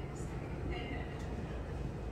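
Chalk writing on a chalkboard: a few short scratches and taps as letters are written, over a steady low room hum.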